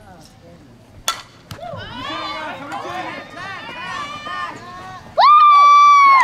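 Softball bat hitting the ball with a sharp crack about a second in, followed by excited shouting and cheering from spectators and players. Near the end comes one long, loud held yell, the loudest sound.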